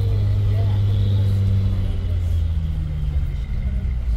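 Bus engine running, heard from inside the passenger cabin as a steady low drone. Its pitch drops a little about halfway through.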